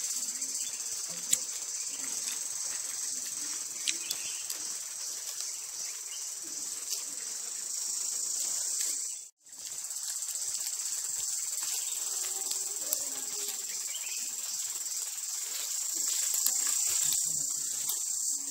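Steady, high-pitched insect chorus that drops out abruptly for a moment about halfway through, with a few faint clicks underneath.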